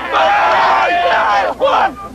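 A crowd cheering and yelling in celebration, many voices shouting over one another, with a short break about one and a half seconds in.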